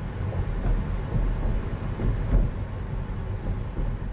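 Low rumble of a moving car heard from inside the cabin, engine and road noise, with a few faint knocks.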